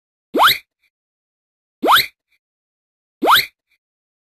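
Three identical cartoon pop sound effects, each a quick upward-gliding bloop, about a second and a half apart, with silence between.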